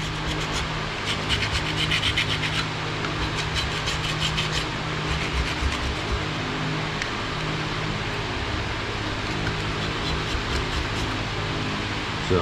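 A hand scraper blade scraping old gasket material off the mating face of a Caterpillar C15 thermostat housing, in quick repeated strokes that are strongest in the first five seconds and lighter after that.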